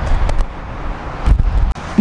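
Outdoor traffic and wind noise: a low rumble that surges a couple of times under a steady hiss, with a few light clicks.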